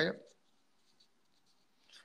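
A man's speech trailing off at the very start, then a pause of near silence lasting over a second, broken only by a faint click.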